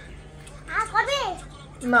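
A toddler's high-pitched voice: a short run of rising-and-falling playful calls about a second in, between quiet stretches. A man's voice starts right at the end.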